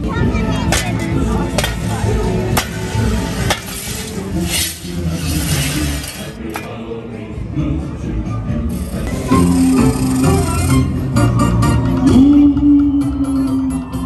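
Parade music with a steady beat, with metallic clinks and scrapes of gravediggers' shovels on the pavement.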